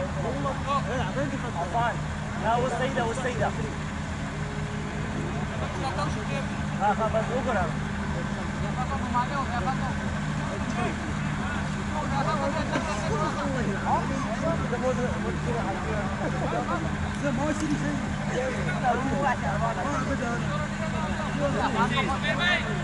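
Distant, indistinct voices of cricket players on the field over a steady low engine hum.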